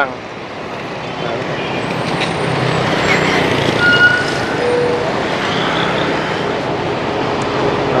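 Steady street traffic noise from motorbikes and a bus passing on the road, swelling over the first few seconds and then holding. A few brief high tones sound near the middle.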